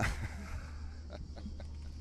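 Soft, breathy laughter from a man after a punchline, over a steady low electrical hum.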